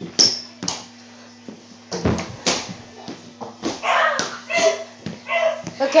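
Irregular thumps and knocks from kids dunking on a mini basketball hoop in a small room: landings, the ball and the rim, several in the first three seconds. Boys' voices and laughter follow near the end.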